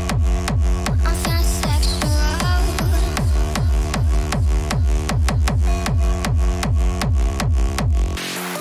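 Hard techno track in a DJ mix: a fast, steady four-on-the-floor kick drum, each hit dropping in pitch, with short synth tones over it in the first few seconds.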